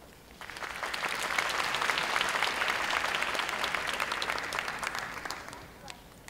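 Audience applauding: a round of clapping that starts about half a second in, holds for about five seconds and fades out just before the end.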